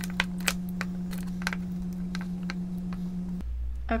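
Plastic lipstick tubes clicking and tapping as they are picked up and set down in a wooden tray, a dozen or so irregular light clicks, over a steady low hum that stops near the end.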